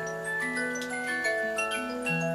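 Clockwork rabbit-in-cauliflower automaton running: its music box plays a tune of overlapping ringing notes over the light clicking of the wound spring movement.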